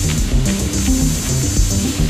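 Acid techno played on several Roland TB-303 bass synthesizers and a TR-606 drum machine: interlocking sequenced lines of short notes stepping in pitch, over a steady drum-machine pattern.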